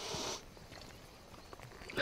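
A man's breathy sounds as he drinks from a leather waterskin: a short hiss at the start and a louder breath near the end.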